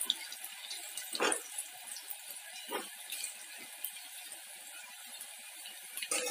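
Cauliflower and potato pakoras deep-frying in hot oil in a kadai, a steady fine sizzle. A spatula knocks against the pan a couple of times, about a second and three seconds in.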